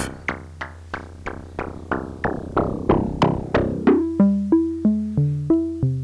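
Sequenced melody of short, plucky synthesizer notes, about three a second, from a Reaktor Blocks West Coast DWG oscillator gated through a low-pass gate, with a steady low tone underneath. At first the modulating oscillator frequency-modulates the carrier, making the notes bright and clangorous. About four seconds in, the modulation is turned back down and the notes become plain and mellow.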